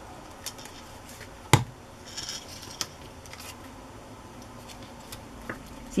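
Small clicks and paper handling on a cutting mat, with one sharp knock about a second and a half in, as a plastic glue bottle is set down, and a brief rustle of paper just after.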